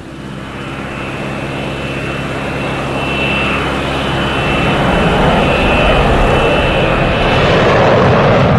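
Jet airliner engines running, with a steady high whine over a rushing noise that grows steadily louder.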